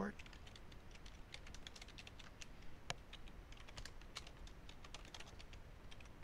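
Faint computer keyboard typing: an uneven run of key clicks as a username and password are typed.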